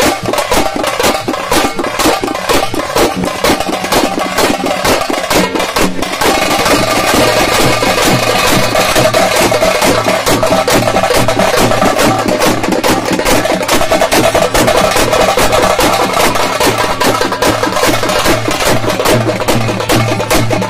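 Several stick-beaten frame drums played together in a fast, dense rhythm. About six seconds in the drumming grows louder and a steady held tone joins it.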